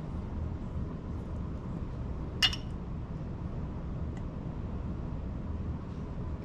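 A single short clink of bar tools, a steel jigger and a glass liquor bottle being handled, about two and a half seconds in, over a low steady hum.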